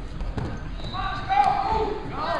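Dull thuds of wrestlers going down onto the mat, followed from about a second in by people shouting.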